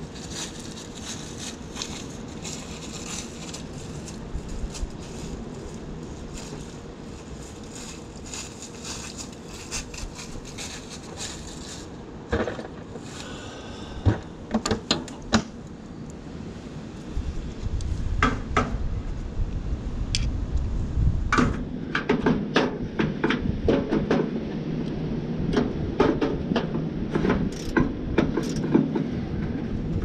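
Scattered clicks and knocks of hand work and tool handling on the truck, over a steady background hiss. From a little past halfway a low rumble comes in and the knocks come thick and fast.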